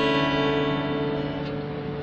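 Acoustic guitar chord strummed across the top four strings, ringing out and slowly fading.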